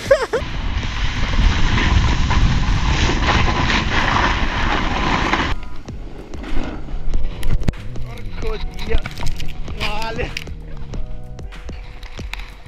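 Loud, even rushing of wind and snow on an action camera's microphone during a snowboard run, cutting off suddenly after about five and a half seconds. Then quieter background music with held notes, with scattered clicks and brief voices.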